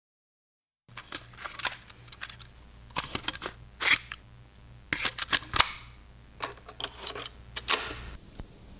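Irregular clusters of sharp mechanical clicks and clacks over a low steady hum, starting about a second in after silence. This is the sound-effect opening of the track, before the music comes in.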